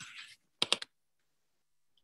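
A quick run of three or four sharp clicks at a computer, about half a second in, after a short soft hiss at the start.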